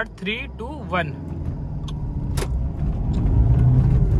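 Honda City's 1.5-litre i-DTEC four-cylinder diesel engine pulling hard in first gear under full-throttle acceleration, heard from inside the cabin and growing steadily louder. A single sharp click about two and a half seconds in.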